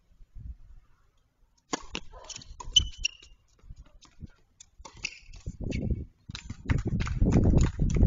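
Sharp knocks at uneven spacing, like tennis ball strikes and bounces on a court, the loudest about three seconds in. In the second half a low rumbling noise builds up and becomes the loudest sound.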